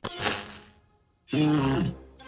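Cartoon sound effect: a sharp crack with a noisy burst that fades over about half a second, then, about a second and a half in, a short cry from the robot character.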